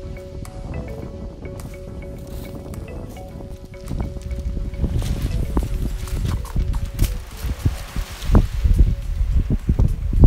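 Background music with steady held tones, fading out of view about halfway through. Wind buffets the microphone, and from about four seconds in it grows louder in uneven gusts.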